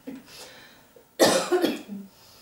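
A woman coughing: a short breath at the start, then a loud two-part cough near the end that trails off in a brief voiced grunt. The practitioner takes these coughs and breaths for the working of the lungs, with pathogenic energy being expelled.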